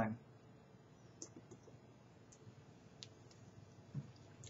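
A person drinking from a plastic bottle: about half a dozen faint, scattered clicks from swallowing and the bottle's thin plastic.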